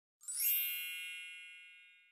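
A single bright chime sound effect with a brief shimmer at the start, ringing on and fading away over about two seconds, as a title card pops up.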